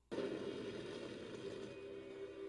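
An animated show's soundtrack: the noisy rumble and crackle of an explosion and fire, starting suddenly, with steady music tones coming in during the second half.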